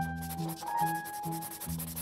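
Black marker pen rubbing across paper while drawing a line, over background music with a simple melody and a repeating bass pattern.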